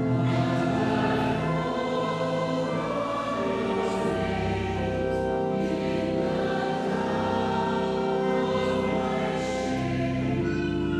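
A church choir singing a slow hymn in long held notes, the offertory hymn sung while the gifts are brought to the altar.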